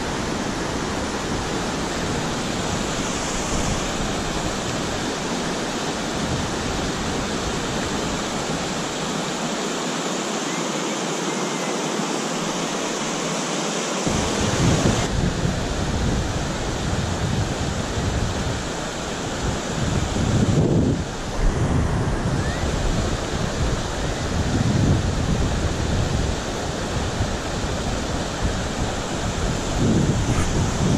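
Steady rush of river water tumbling over a low weir. From about halfway through, gusts of wind buffet the microphone.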